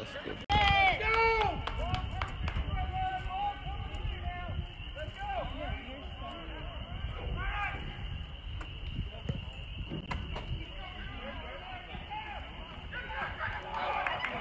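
Indistinct shouting and chatter from players and spectators along a football sideline, loudest in a couple of shouted calls about half a second in, over a steady thin high tone.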